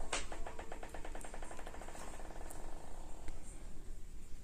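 A small metal screw dropped onto ceramic floor tile, bouncing and rattling in quick, ringing ticks that come faster and fainter until it settles after about two and a half seconds.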